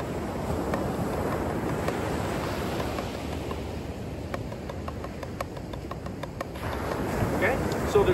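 Drumsticks tapping a drum practice pad in an even run of strokes, playing inverted paradiddle-diddles (right-left-left-right-right-left), stopping about two-thirds of the way through. Steady wind and surf noise lies under the strokes and is the louder sound.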